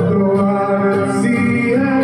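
A man singing into a microphone through a PA, holding long notes, with a strummed acoustic guitar accompanying him.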